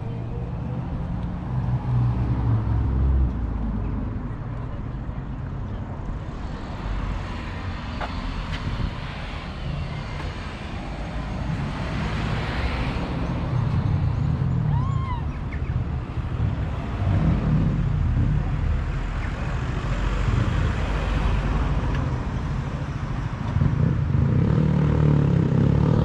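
Cars driving past on a town street, a steady traffic rumble that swells and fades as vehicles go by, with faint voices of passers-by.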